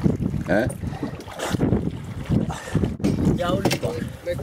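Wind buffeting the microphone and choppy water around a small open fishing boat, a gusty, uneven rumble, with two short voice calls, one about half a second in and one near the end.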